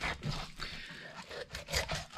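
Fillet knife scraping and crunching as it is pushed through the rib bones of a black drum, in short irregular crackles.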